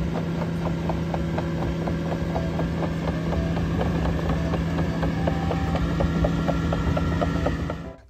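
Cat AP655F tracked asphalt paver running: a steady machine hum with quick, even mechanical ticking over it.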